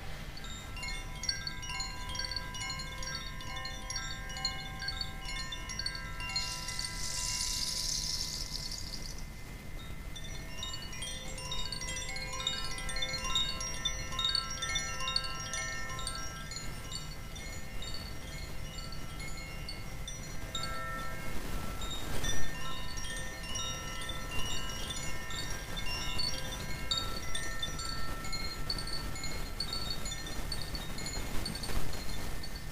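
A hand-held cylinder wind chime swung on its cord, its striker sounding many overlapping ringing, tinkling tones that keep sounding throughout. A brief high hiss comes about seven seconds in, and a single sharp knock a little past twenty seconds.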